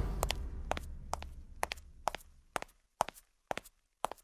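Footstep sound effect: sharp, hard-soled steps at about two a second. Under the first steps, a low rumble fades out over the first two seconds.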